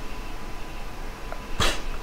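A pause in a man's talk, broken about one and a half seconds in by one short, sharp, hissy breath picked up close on his clip-on microphone.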